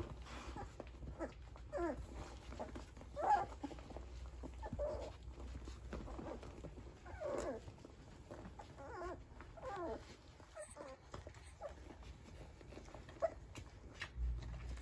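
Nursing standard poodle puppies whimpering and squeaking in short, pitch-bending cries, about ten of them spread one every second or so, as they jostle for a teat.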